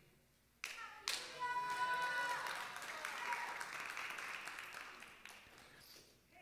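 Faint applause from a congregation, fading away over about four seconds, with one high voice calling out briefly near its start.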